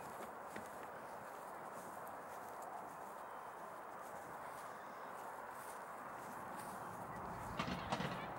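Faint, steady outdoor background noise with no clear single source, and a few light knocks near the end.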